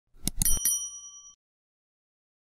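Subscribe-button animation sound effect: a couple of quick mouse clicks, then a short, bright notification bell ding that rings for under a second and stops.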